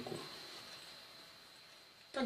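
Near silence: faint room tone with a thin steady high-pitched whine in the background.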